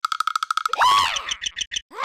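Cartoon sound effects: a fast fluttering high trill for most of the first second, then a cartoon character's wordless squealing cry, then a quick run of short high pips.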